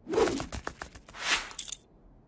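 Cartoon sound effects: a short noisy swish, a few quick clicks, then a swelling whoosh about halfway through.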